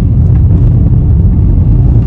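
Steady low rumble of a car's road and engine noise heard inside the cabin.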